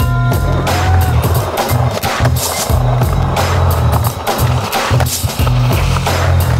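A skateboard rolling and doing tricks on street asphalt, mixed under soundtrack music with a heavy, pulsing bass.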